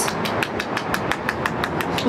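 A fast, even run of sharp clicks, about eight a second, over a steady background hum.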